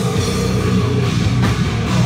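A heavy metal band playing live: distorted electric guitars, bass guitar and a drum kit, loud and dense, over a steady drum beat. No vocals are heard.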